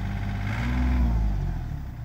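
Komatsu 2.8-ton mini excavator's diesel engine idling, then swelling and running down as it is shut off. Its steady note is gone by near the end.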